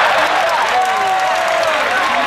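Large baseball-stadium crowd applauding and calling out after a groundout to second base, with one long held shout standing out about a second in.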